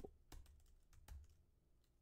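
Faint computer keyboard typing: a few quick keystrokes, stopping a little over a second in.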